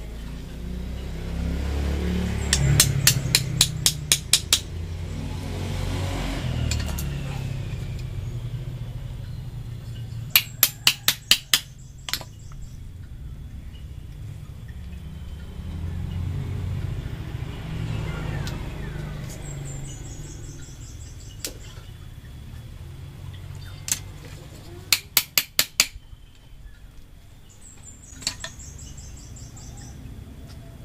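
Three bursts of quick, sharp taps as a metal tool is worked into a thick Ficus microcarpa bonsai root to split it, each burst lasting about two seconds. A low rumble swells and fades twice underneath, and a faint high chirping comes twice near the end.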